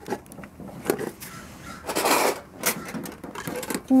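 Metal tea tin being handled and opened: a few sharp clicks and knocks of tin and lid, with a brief rustle about two seconds in.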